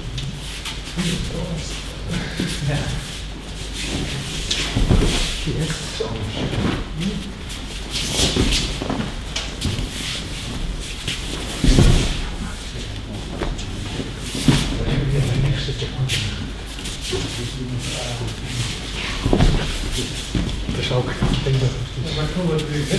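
Thuds of aikido partners falling onto training mats during throws, with shuffling feet and low, indistinct talking between pairs; the loudest thud comes about halfway through.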